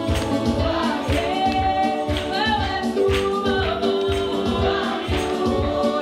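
Gospel praise song sung by a group of women through microphones, a lead voice with others joining, over accompaniment with a steady, even beat.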